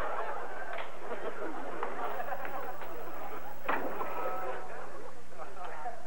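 Studio audience laughter tapering off after a punchline, with a single door slam about three and a half seconds in.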